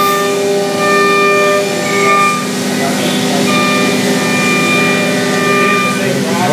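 CNC machining center cutting metal under flood coolant: the spindle and cutter give a steady whine made of several held pitched tones, over the hiss of coolant spray. The higher tones drop out about halfway through and then come back.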